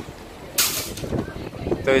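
A short, sharp burst of hiss, about half a second long, a little after the start, over a quiet outdoor background with faint voices.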